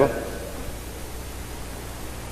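Steady hiss with a faint low hum. This is the background noise of the recording in a pause between a man's sentences at a microphone.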